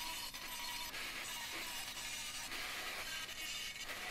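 Carbide burr in a hand-held rotary grinder cutting into welded metal, a steady, quiet scratchy grinding.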